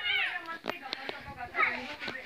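High-pitched cries: one falls in pitch right at the start, and another comes about one and a half seconds in. Two sharp clicks fall between them.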